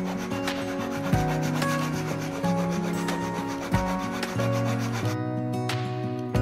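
Small handsaw cutting a strip of white trim molding with quick back-and-forth rasping strokes. The sawing stops about five seconds in, leaving guitar music playing underneath.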